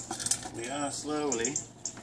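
Dry puppy food pellets clinking in a metal bowl as a handful is scooped out, followed by a drawn-out voice.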